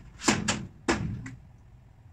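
Four knocks of a cabinet part being fitted into the frame of a cabinet under assembly, the last one lighter, all within the first second and a half.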